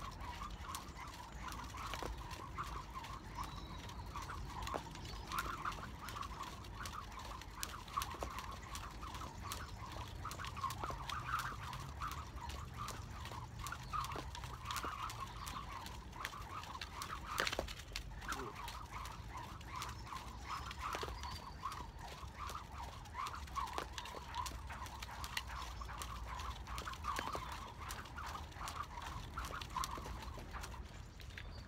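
Thin cable jump rope whirring through the air in repeated side swings and crossovers, a rhythmic pulsing whir, with a few sharp clicks of the rope.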